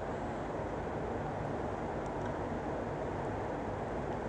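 Steady, even rushing background noise outdoors, with no distinct events.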